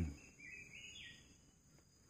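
A faint bird call: a short run of notes stepping up in pitch, about half a second in, over quiet forest background.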